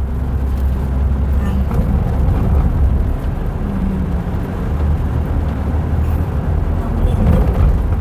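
Car driving slowly on a paved road, heard from inside the cabin: a steady low rumble of engine and tyres.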